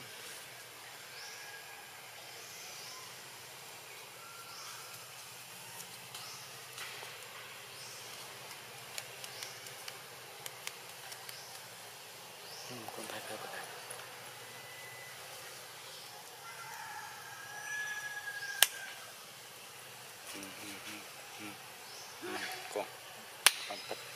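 Tropical forest ambience: a steady hum of insects with short, high bird chirps repeating, and a few sharp clicks, the loudest a single click near the end.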